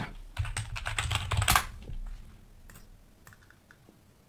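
A quick run of light clicks and taps, dense for about the first second and a half, then thinning out and fading away.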